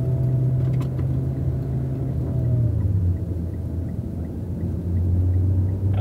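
Car engine and road noise heard from inside the cabin while driving: a steady low drone that drops in pitch about halfway through and rises again near the end.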